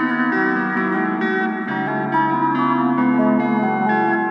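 Instrumental rock-blues guitar music: held, ringing notes and chords over a bass line that moves to a lower note about a second and a half in.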